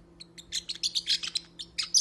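Small pet parrot chattering in a quick run of short, high chirps, starting about half a second in and getting louder near the end.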